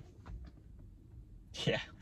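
Quiet electric-car cabin: a faint, steady low hum with a few soft clicks in the first half second, then a man's brief "yeah" near the end.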